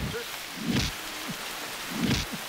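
Heavy rain falling steadily, with a man groaning briefly a few times.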